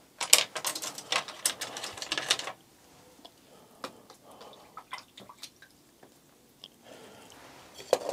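A paintbrush being handled and rinsed in a plastic tub of water: about two seconds of rattling, swishing and clicking near the start, then sparse faint taps and clicks, and another short rattle near the end.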